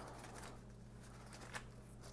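Faint rustling of gloved hands rolling a log of bread dough on parchment paper.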